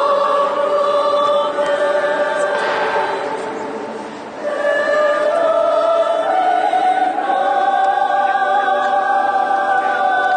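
Mixed adult choir singing long held chords in a large reverberant stone church. The sound fades out at the end of a phrase about four seconds in, then the choir comes back in with sustained chords.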